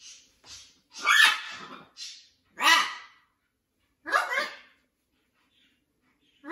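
Macaws calling: three short, loud calls about a second and a half apart, preceded by a couple of fainter ones.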